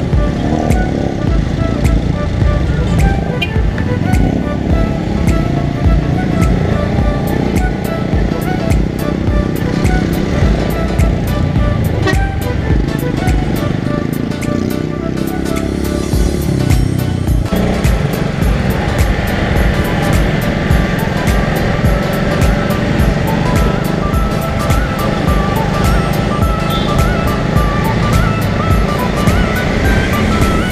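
Background music with a steady beat, mixed over the running of the Suzuki GSX-R150's 150 cc single-cylinder engine and road noise as the motorcycle rides through traffic. The music changes section about 17 seconds in.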